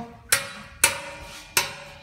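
Adjustable wrench clinking against the steel hex head of a homemade bolt-type hole punch as it is re-set for each turn. There are three sharp metallic knocks about half a second apart, each ringing briefly. The punch is being screwed down to press a hole through iron sheet.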